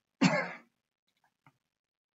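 A man clearing his throat once, a short burst of about half a second near the start, followed by a faint tick.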